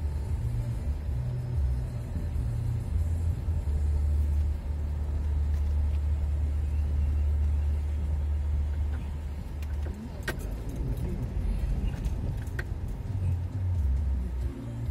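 Car cabin rumble while the car drives slowly over a cobblestone street: a steady low drone from the engine and tyres on the stones, with a few sharp clicks or knocks near the end.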